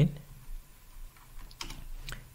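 Computer keyboard keystrokes: a handful of separate key clicks as a short terminal command is typed and entered.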